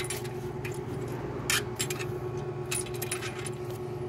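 A few light metallic clicks and taps from a wrench and metal engine parts being handled, over a steady low hum.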